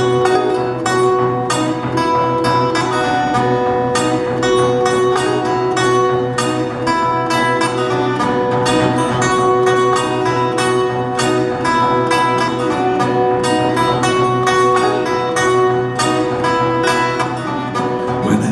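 Metal-bodied resonator guitar played fingerstyle, a blues intro with a quick run of picked notes over a low bass note ringing steadily underneath.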